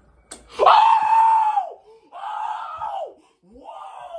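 A woman screaming: three long screams, the first the longest and loudest, each dropping in pitch as it ends.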